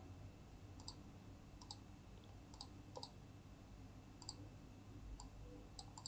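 Faint computer mouse clicks, about eight of them spaced unevenly over low room hiss.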